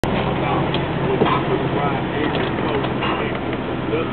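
Steady engine and road noise inside a moving car's cabin, with indistinct talking over it.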